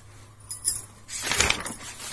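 Paper rustling as the pages of a textbook are turned: a brief rustle about half a second in, then a longer, louder rustle a little past halfway.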